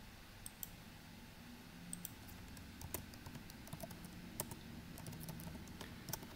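Faint keystrokes on a computer keyboard: a handful of separate taps, some in quick pairs, spread a second or so apart.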